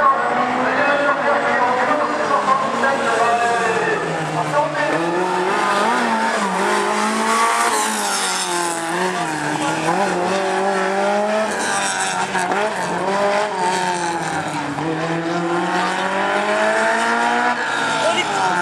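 Alpine A110's rear-mounted four-cylinder engine revving up and down as the car is driven hard through a slalom, the engine note rising and falling with each turn. Tyres squeal about eight seconds in and again around twelve seconds.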